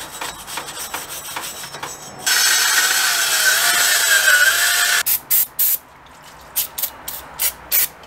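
Hand scraping on a rusty wheel-hub face for about two seconds, then a cordless drill with a wire wheel running on the hub for nearly three seconds, its motor tone wavering under load, before cutting off. Several short hisses of aerosol brake cleaner follow.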